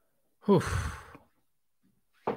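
A man letting out one 'whew' sigh about half a second in: it opens with a voiced tone that falls in pitch and trails off into breath within under a second.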